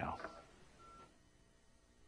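A faint short electronic beep a little under a second in, following the end of a spoken word; then quiet room tone.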